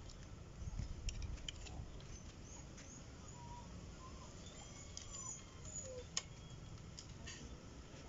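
Faint background with a few short bird chirps and several light clicks, the loudest about six seconds in, as a Shimano RD-TY300 rear derailleur is handled against the bicycle frame's rear dropout.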